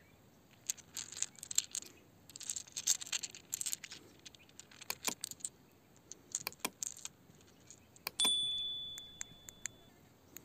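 Small crystals and stones clicking and clinking against one another in a hand, in quick scattered clusters. About eight seconds in, a single bright ding rings out and fades over a second or two.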